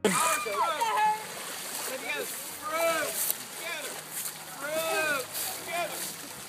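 Children's high-pitched voices calling out over and over, with paddles splashing in the water of a pond as a barrel raft is paddled.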